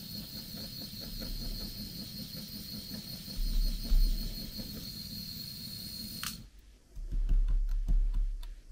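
Small handheld gas torch burning with a steady hiss and a thin high whistle, melting the cut end of a nylon clamp band. The flame is shut off with a click about six seconds in. There is a low bump about four seconds in, and low handling noise near the end.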